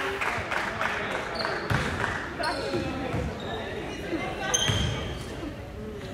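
A basketball bouncing on a hardwood gym floor, a few bounces in the first second, echoing in a large gym. Voices in the gym and a couple of short high squeaks follow.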